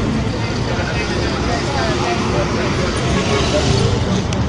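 Busy road traffic, with minibuses and cars running past, under a steady babble of many people's voices.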